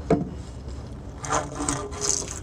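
A sharp knock, then rubbing and scraping as a fabric heat-wrapped exhaust pipe is worked into place against the helicopter's engine and airframe. The scraping grows busier in the second half.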